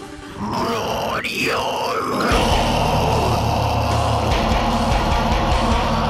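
Metalcore song with a vocal line that sweeps up and down in pitch after a short dip in level. About two seconds in, the full band of heavy distorted guitars and drums comes in and plays on.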